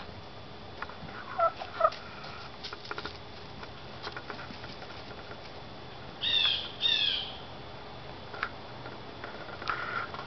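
Chickens calling in their run: a few short calls early on, then two louder, falling squawks about six and seven seconds in, with more short calls near the end.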